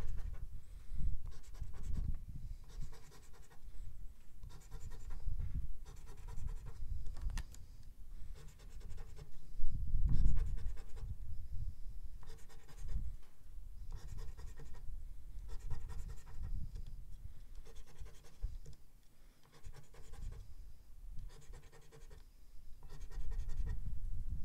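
A scratch coin scraping the coating off a paper scratch-off lottery ticket, in repeated short strokes with brief pauses between spots.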